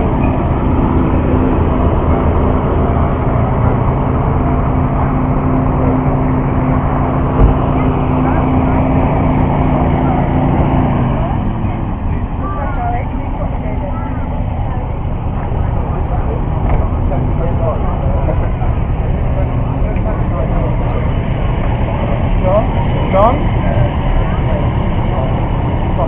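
A motor vehicle's engine running steadily close by, its note dropping away about eleven seconds in, over a steady background of crowd chatter.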